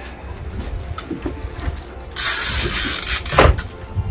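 Low rumble of wind and a boat's engine on open water, with a hiss lasting about a second about two seconds in and a loud thump near the end.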